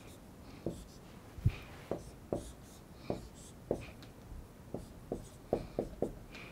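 Dry-erase marker drawing on a whiteboard: a string of short, irregular strokes and taps as lines and a ring are drawn.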